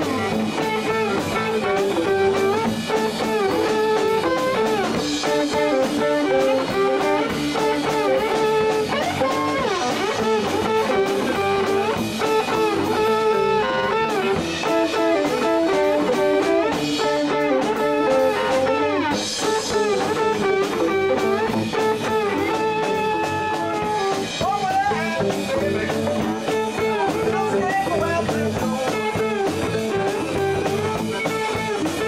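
Live band playing amplified music: electric guitars, one with a lead line of bent, sliding notes, over a drum kit, continuous and steady.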